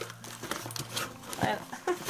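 Cardboard shipping box and paper rustling and crinkling as the torn-open flap is handled, with a few small ticks.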